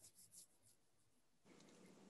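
Near silence: a pause between speakers on a remote video call.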